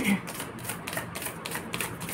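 A deck of tarot cards being shuffled by hand: a quick, even run of light card clicks, about seven or eight a second.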